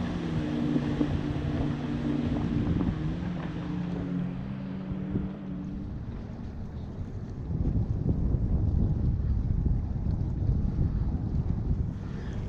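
Jet ski engines running steadily out on the lake, fading away after about six seconds. After that, wind rumbles on the microphone.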